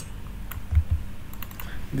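A few scattered keystrokes on a computer keyboard, with a couple of dull low knocks a little under a second in.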